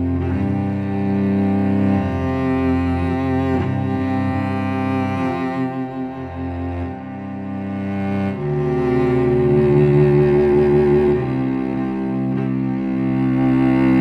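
Sampled solo cello from the Cello Untamed library, played from a keyboard: a slow phrase of long bowed notes, changing pitch every few seconds and swelling louder a little past the middle.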